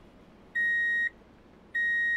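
Electronic 'please stand by' test-tone beep added in editing: a steady high tone of one pitch, sounding about half a second at a time and repeating about every 1.2 s. Two beeps fall here, the second starting near the end.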